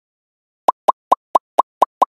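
A quick run of six short pop sound effects, about four a second, starting under a second in: one pop for each letter of an animated logo popping onto the screen.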